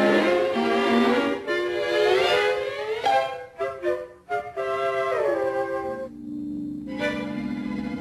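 Orchestral film-score music, strings and woodwinds playing sliding, wavering phrases. A low held note comes in about six seconds in.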